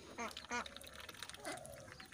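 Domestic ducks quacking faintly: a couple of short quacks early on and a longer call near the middle.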